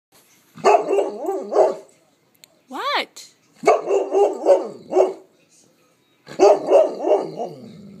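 Bernese mountain dog 'talking': three bouts of rapid, varied bark-like vocalizing, with a short high rising-and-falling whine about three seconds in.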